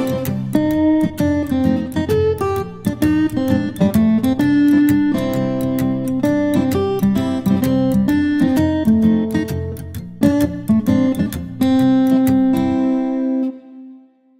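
Background music: an acoustic guitar playing a plucked melody. The music stops shortly before the end.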